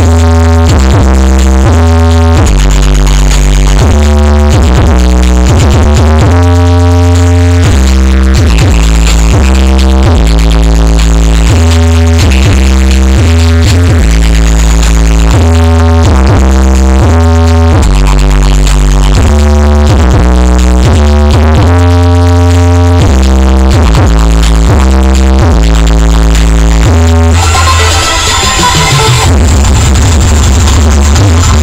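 A giant 20-subwoofer sound rig with line-array speakers playing bass-heavy electronic dance music very loud in a sound check. Heavy bass notes change about once a second; near the end the bass briefly drops back and a bright hissy rush rises before the beat returns.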